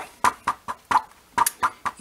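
Several light, uneven clicks and taps from a plastic glue tube being squeezed and pressed against a paper strip.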